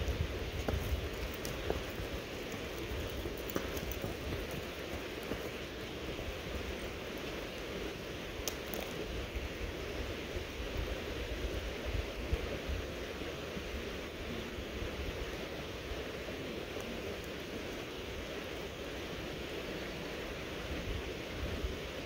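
Steady rushing of a flowing creek, with wind rumbling on the microphone.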